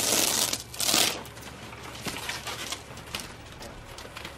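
A wire being yanked and dragged across a desk: two quick scraping swishes in the first second, then faint clicks and rustles as it is pulled along.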